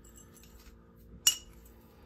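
Steel washers clinking together in the hand: one sharp metallic clink just over a second in.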